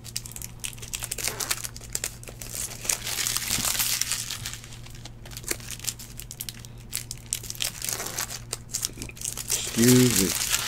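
Foil trading-card packs crinkling as they are handled and torn open by hand, with dense crackling that is thickest around the middle.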